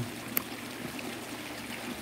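Steady trickle of running water in a rocky backyard pond, with one faint click about a third of a second in.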